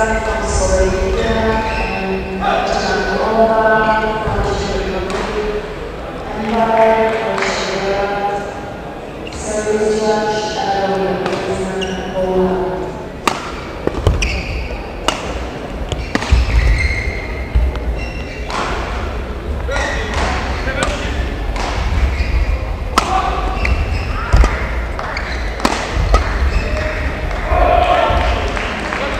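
Indistinct voices in the hall for the first half, then a badminton rally: sharp racket strikes on the shuttlecock about every second, with the players' feet thudding on the court.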